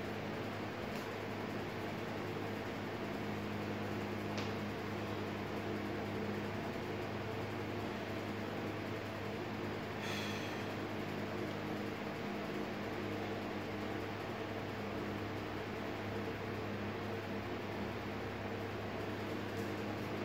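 Steady mechanical hum with an even hiss, the room tone of a garage, with a few faint clicks about a second in, near four and a half seconds and about halfway through.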